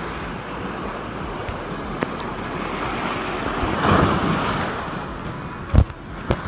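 Surf washing onto the beach with wind on the microphone, rising as a wave surges in about four seconds in. A single low thump comes just before the end.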